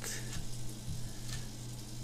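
Steady low electrical hum with faint hiss from the narration microphone's recording chain, with no speech over it.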